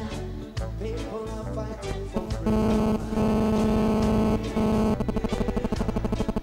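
Reggae band with a chamber orchestra playing an instrumental passage live: bass and drums at first, then a loud held chord from about two seconds in, which breaks into a fast pulsing, about nine beats a second, near the end.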